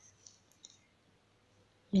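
A few faint, short clicks in the first second, then near silence until a woman's voice begins at the very end.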